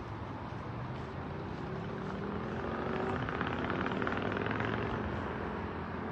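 A steady engine drone with a low hum, swelling a few seconds in and easing off near the end.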